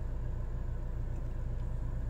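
Steady low rumble of a car heard from inside its cabin, with the engine running.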